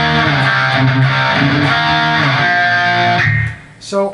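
Distorted electric guitar through a Marshall amp slowly playing a heavy riff of held power-chord notes, stepping from C to D to D-sharp. The last note dies away shortly before the end.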